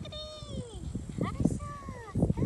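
Bullmastiff puppy whining: one long falling whine, a few short squeaks a little past a second in, then another falling whine near the end.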